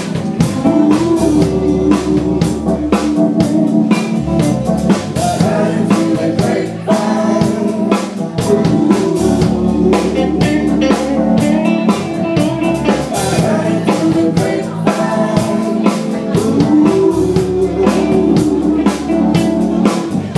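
Live band playing: electric guitar and drum kit with a steady beat, and singing over it.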